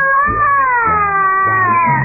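A young child crying: one long, drawn-out wail that slowly falls in pitch.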